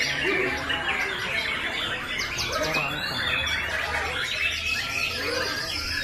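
Many caged songbirds, a white-rumped shama (murai batu) among them, singing over one another: a dense, unbroken mix of whistles, chirps, sweeping notes and fast trills.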